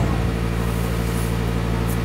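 A steady low hum made up of several held tones that stay unchanged, with no speech.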